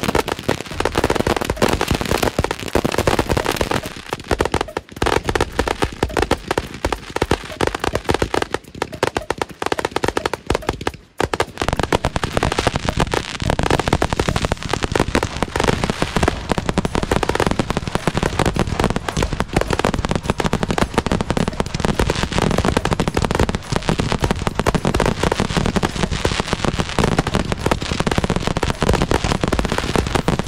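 A large batch of multi-shot sky-shot firework cakes firing all at once: a dense, unbroken barrage of launches, pops and crackling shell bursts. There is a brief drop in level about eleven seconds in.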